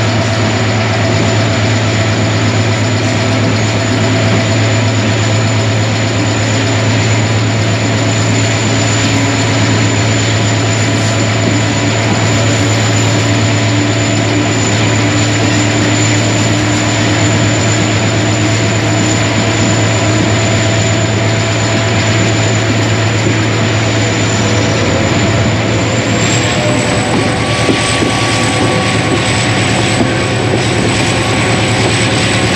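Diesel-electric locomotive running steadily under way, a loud, even low drone with the rumble of the moving train over the rails, heard from close beside the locomotive.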